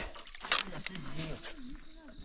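A single sharp knock about half a second in as the landing net holding a grass carp is set down on the fishing platform, followed by faint, low voices.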